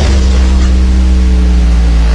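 A loud, low bass drone from a trailer soundtrack, held on one steady note with a buzzy edge of overtones.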